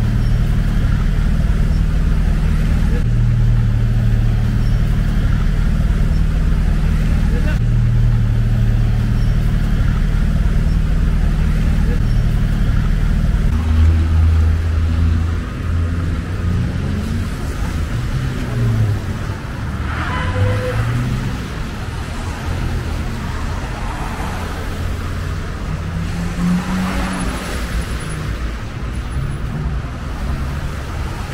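Road traffic on a slushy city street: a loud, steady engine rumble from vehicles close by at a crossing. After a cut about halfway in, cars pass with engine notes that rise and fall.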